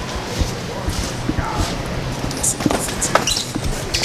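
Footsteps and scattered knocks and thumps under a steady hubbub with indistinct voices, including a cluster of knocks as a cardboard appliance box is pulled off a store shelf near the end.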